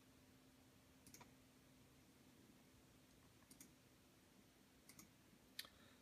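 Near silence with four faint computer mouse clicks a second or more apart, the last one a little louder, over a faint steady hum.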